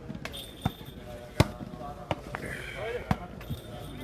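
A volleyball being struck by players' hands and forearms during a rally: several sharp slaps, the loudest about a second and a half in.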